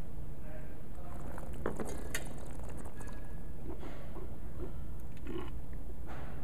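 Soft mouth sounds of red wine being tasted: sipped, drawn in and swished around the mouth in short bursts, then spat into a metal spit bucket near the end, over a steady low hum.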